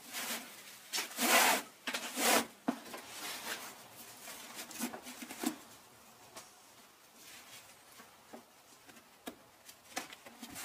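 Fabric webbing being pulled and tucked over and under through a woven chair seat, giving irregular rubbing swishes of strap against strap. The swishes are loudest in the first three seconds, then the handling turns quieter, with a few light clicks near the end.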